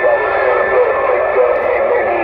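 Uniden Grant XL CB radio's speaker receiving on channel 6 (27.025 MHz): a steady wash of static with garbled, wavering voices in it, and a thin steady whistle through most of it.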